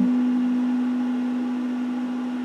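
Electric guitar with one note left ringing on its own after the rest of the chord stops, sustaining steadily and slowly fading.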